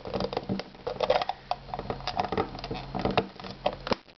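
Hard plastic toy parts clicking and scraping in the hands: the loose back hatch of a Mr. Potato Head figure being worked back into place. Irregular small clicks and knocks continue throughout.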